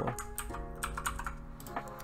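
Light, irregular clicking of a computer keyboard and mouse at a desk.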